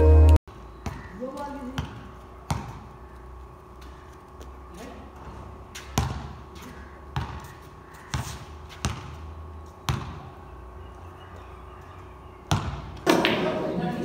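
A basketball bouncing on a concrete court: single sharp thuds, irregularly spaced a second or two apart, with faint voices of players in between.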